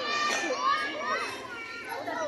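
Children and other roadside onlookers chattering and calling out, several high voices overlapping.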